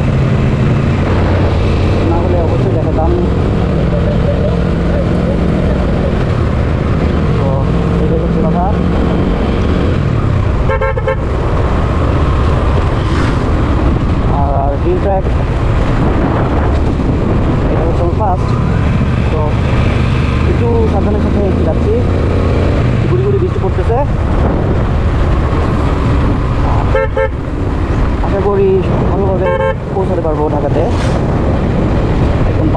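Suzuki Gixxer SF motorcycle's single-cylinder engine running at a steady road speed, with wind rushing over the microphone, for the whole stretch.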